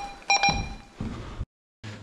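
An electronic alarm beeping: short high beeps about every half second, with knocks and rustling under them. The sound cuts off abruptly partway through.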